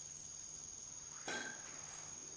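A pause in speech: faint background with a steady high-pitched tone and a low hum, and one brief soft noise just past the middle.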